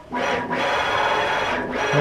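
Stepper-driven ball screw of a CNC linear axis spinning at high speed, a steady mechanical whir with a thin whine over it, starting just after the beginning and dropping away near the end. The long screw is whipping at this speed, which the builder calls everything wiggling.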